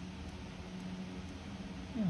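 Quiet steady room noise with a faint low hum, with no distinct clicks or knocks.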